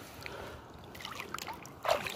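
Shallow river water lapping and trickling at the edge, faint, with small scattered ticks and one short, louder splash near the end.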